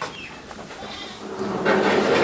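A calf bawling: one drawn-out call that starts about one and a half seconds in and is the loudest sound here.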